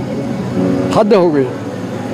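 A man's voice speaking briefly about a second in, with a drawn-out falling syllable, over steady outdoor background noise.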